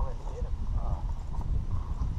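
Faint voices of a group of people talking a short way off, over a steady low rumble.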